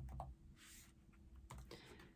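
Near silence: quiet room tone with a few faint, light clicks.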